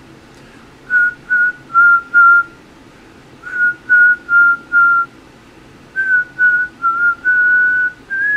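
A man whistling a tune in three short phrases of clipped notes that stay close to one pitch, with a longer held note near the end.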